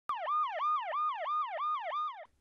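A rapid siren-like sound effect: a pitch that falls and snaps back up about three times a second, opening with a click.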